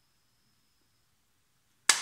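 Near silence with a faint high steady tone in the first half, then a single sudden sharp smack just before the end.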